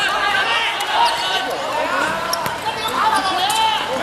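Football players and onlookers shouting and calling out during five-a-side play on a hard outdoor court. A sharp thud of the ball being kicked on the court comes about halfway through.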